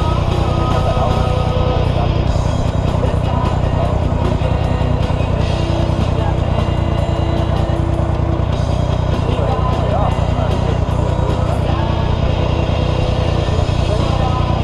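Dune buggy engine idling steadily, with voices and music over it.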